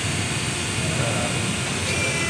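ARI-Hetra tire-removal machine running steadily, turning a foam-filled loader tire against its cutter to strip the tire off the wheel.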